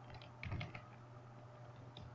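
Faint keystrokes on a computer keyboard: a few light clicks at the start and a short run of keys about half a second in, over a low steady hum.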